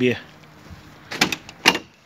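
A car door being opened: two short latch clicks, about half a second apart, a little over a second in.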